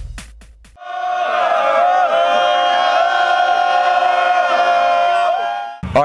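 A title sting: a brief musical tail with a few sharp hits, then a loud chorus of many voices holding one sustained chord for about five seconds, cut off abruptly.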